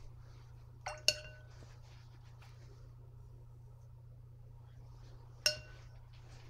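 A watercolour brush clinking against the metal paint box as paint is picked up: two quick clinks about a second in and one more near the end, each with a short ringing tone. A steady low hum runs underneath.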